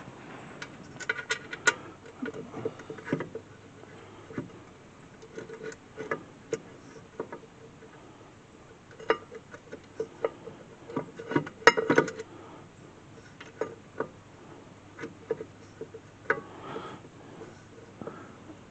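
Scattered light metallic clicks and clinks of rear disc-brake parts being handled: the caliper and pads being fitted over the rotor by hand. They come in bursts, busiest early on and again around the middle.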